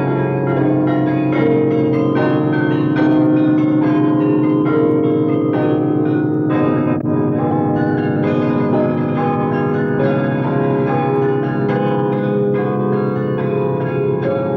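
Music of bell-like tones sounding many notes over long-held chords, going on steadily.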